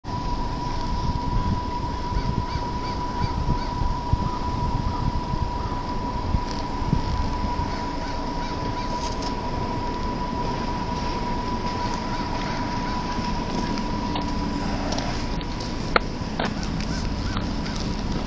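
Outdoor street ambience with wind rumbling on a small camera's microphone and a steady thin high tone through most of it. A few sharp clicks come near the end as the camera is shifted.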